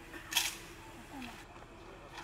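A single sharp clack about a third of a second in, from a squad's rifles being handled together in rifle drill.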